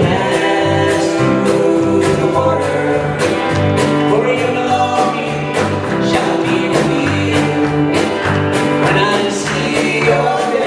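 A live band playing a country-gospel song: a man singing over strummed acoustic guitar, electric guitar, bass guitar and a steady drum beat.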